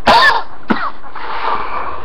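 A man coughing: a harsh cough right at the start and a second, shorter one under a second later, then rough breathing.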